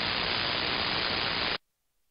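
Static from an SDR transceiver's receiver on the 11-metre band: a steady hiss of band noise, with nothing above about 5 kHz. It cuts off abruptly about one and a half seconds in, as the rig is switched to transmit.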